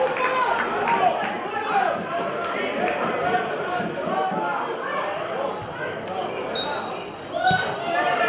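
Players shouting and calling to each other on a football pitch, with the thud of the ball being kicked. Short blasts of a referee's whistle sound near the end.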